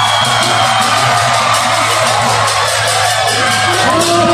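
Loud Lakhe dance music of drums and clashing cymbals keeping a quick, even beat, over a crowd shouting and whooping.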